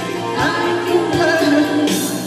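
A woman singing a pop song through a handheld microphone over a karaoke backing track with a steady beat.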